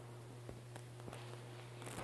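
Faint room tone: a steady low hum with a few soft clicks.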